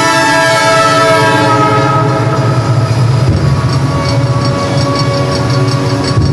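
Train sound effect in a live music performance: a many-toned, horn-like sound slowly falling in pitch over a low rolling rumble. From about three and a half seconds in, a regular ticking about four times a second joins, like wheels clicking over rail joints.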